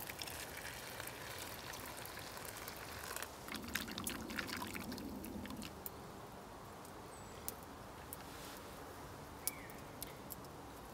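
Liquid poured from a stainless steel pot into a metal camping mug, with a few sharp clicks about three to four seconds in.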